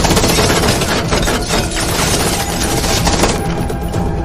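Automatic gunfire: a long, rapid burst of many shots that thins out about three seconds in.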